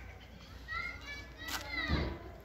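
High-pitched children's voices calling out in short rising and falling cries, with a couple of short sharp knocks in the second half, the last one the loudest.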